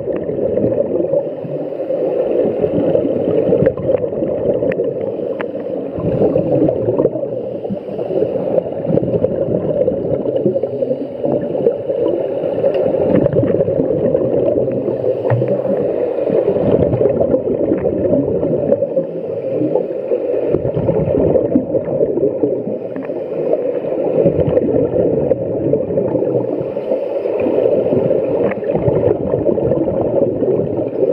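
Muffled underwater gurgling and rumble of scuba divers' exhaled bubbles from their regulators. It swells and eases in waves a few seconds apart.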